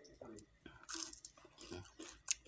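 A person chewing half-cooked eel close to the microphone: irregular soft clicks and mouth smacks, with a short crunch about a second in.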